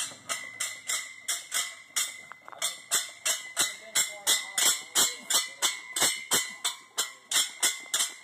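Steel weight plates clinking and rattling on a 610-pound strongman yoke as it sways with each short stride of a yoke walk. The metallic clinks come evenly, about three a second, each with a brief ring.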